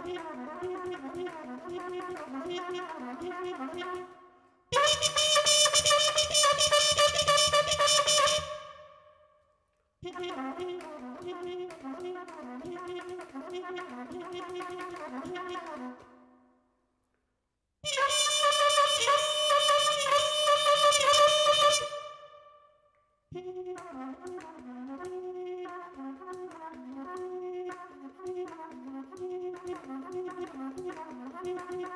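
Solo trumpet playing free-improvised music: stretches of quick, quieter note figures alternate with two loud, bright held notes, each section broken off by a short silence.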